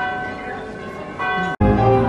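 Sustained ringing tones with a brief voice, cut off abruptly about one and a half seconds in and replaced by piano music.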